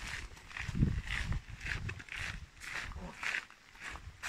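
Footsteps of people walking, about two steps a second, over low rumbling from a handheld microphone.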